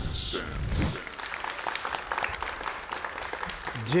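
The tail of the show's opening theme music fades away in the first second, followed by light applause: scattered hand clapping.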